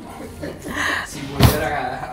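A single sharp knock about one and a half seconds in, like something hard set down or bumped against the counter, over faint voices.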